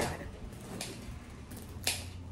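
A low steady hum with a faint tick about a second in and one sharp click near the end: small handling sounds at a table, such as a bottle set down or a knife on a board.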